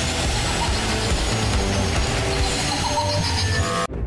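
Short, loud intro music sting with a dense, noisy texture that cuts off abruptly near the end.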